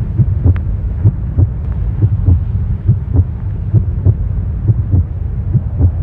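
Regular, heartbeat-like low thumps, a little over two a second and loosely paired, over a constant low drone.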